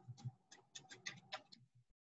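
Faint computer keyboard keystrokes typing a word: about a dozen quick clicks that stop shortly before the end.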